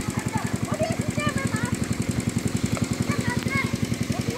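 Small engine-driven water pump running steadily with a fast, even chugging of about twelve beats a second, draining the pond.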